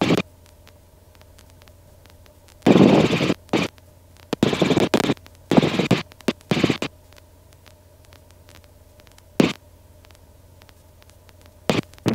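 Robinson R22 Beta II helicopter's faint, steady drone heard through the cockpit intercom, broken by a run of short, loud bursts of crackling hiss in the middle, and one more near the end.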